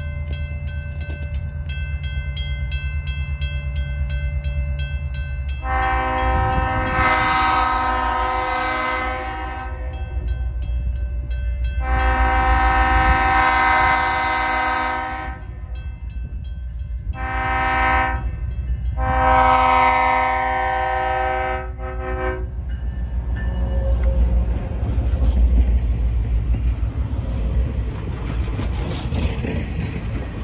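A grade-crossing bell rings steadily. Then the multi-tone horn of an EMD GP38 diesel locomotive sounds the crossing signal as it approaches: long, long, short, long. The locomotive and its passenger coaches then run past with a steady rumble of wheels on rail.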